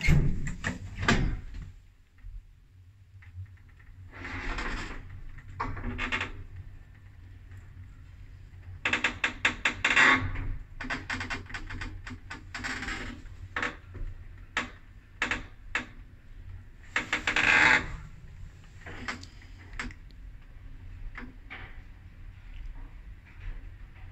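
Zremb passenger lift, modernized with an inverter drive, heard from inside the car. A click of a call button comes right at the start, then a steady low hum from the running lift, broken by repeated clusters of clicks and knocks, the loudest about ten seconds in and again near the end.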